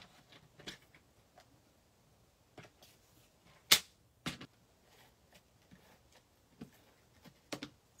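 Scattered light clicks and taps as a paper trimmer and card stock are handled on a craft mat, with one sharp click about halfway through and a smaller one just after it.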